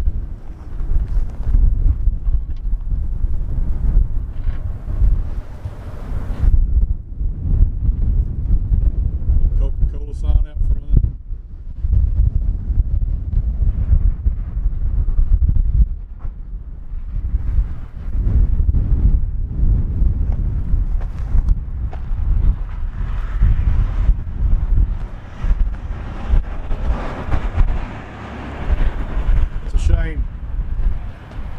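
Wind buffeting the microphone in uneven gusts, a heavy low rumble that rises and falls. A brief high-pitched sound comes about ten seconds in.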